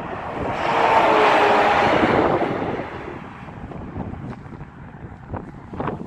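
A vehicle passing at highway speed, its noise swelling and then fading over about two seconds, with wind buffeting the microphone.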